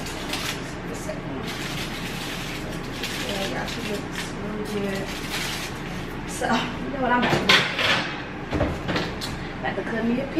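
A metal baking tray lined with foil is handled out of an electric oven onto the stovetop, with the oven rack sliding. The clatter and rustle are loudest from about six and a half to eight seconds in.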